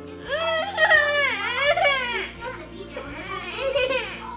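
A toddler crying and whining in a high-pitched voice for about two seconds, with a shorter whimper near the end, over background music.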